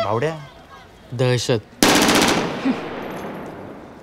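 A sudden, very loud rattling burst of bangs about two seconds in that dies away slowly, startling enough that someone reacts to it as a fright.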